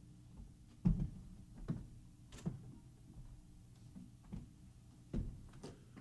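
A few scattered knocks and thumps on a stage as a performer walks across it and takes up an acoustic guitar, the loudest about a second in and another near the end, over faint room tone.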